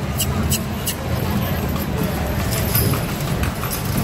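Carriage horse's hooves clip-clopping on the street pavement, a few strikes in the first second and fainter ones later, over a steady low rumble of street traffic.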